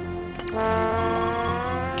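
A single held brass-like note on the soundtrack, steady in pitch, coming in about half a second in.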